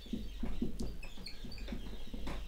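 Dry-erase marker squeaking and rubbing on a whiteboard in short irregular strokes as capital letters are written.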